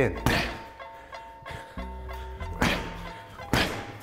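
Boxing gloves landing jabs on a heavy punching bag: a few separate thuds, the clearest about two and a half and three and a half seconds in. Background music with steady tones plays underneath.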